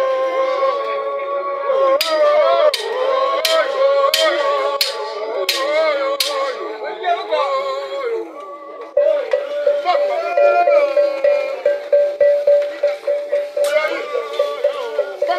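Live dance music of singing voices with percussion: in the first half a run of about seven sharp strikes falls a little under a second apart, and in the second half a long held note pulses in a steady rhythm.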